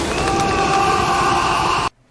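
Film sound effect of a lightning bolt: a loud, dense rushing noise with several steady high tones held over it, cut off suddenly near the end.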